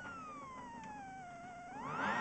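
Rally car engine held on revs at the start line, its pitched whine sinking slowly, then climbing quickly near the end as the revs are raised for the launch.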